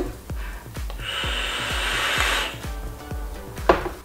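A puff on a box-mod vape: a steady airy hiss of breath through the device, starting about a second in and lasting about a second and a half. Soft background music with an even beat underneath.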